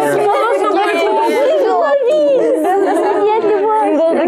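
Several high voices talking and exclaiming over one another at once, with no single clear speaker.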